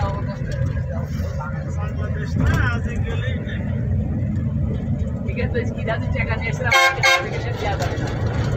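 Steady low engine and road rumble heard from inside a moving vehicle, with a vehicle horn honking twice in quick succession about seven seconds in.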